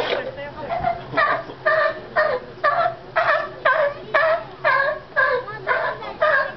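A sea lion barking in a steady series, about two barks a second.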